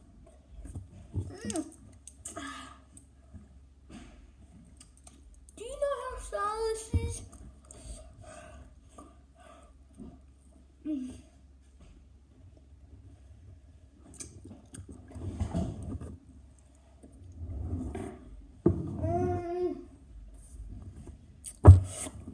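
A child's wordless 'mm' hums and drawn-out vocal sounds with his mouth full of very sour candy, reacting to the sourness, with short gaps between them. There is a sharp thump near the end.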